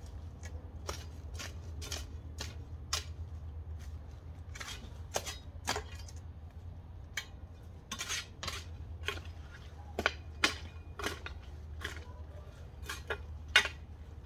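Irregular sharp clicks and snips from someone working by hand among corn plants, about one or two a second, over a steady low hum.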